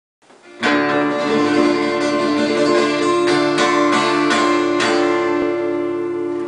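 Twelve-string acoustic guitar playing a song's opening chords, starting about half a second in and left ringing, with several fresh strums in the second half.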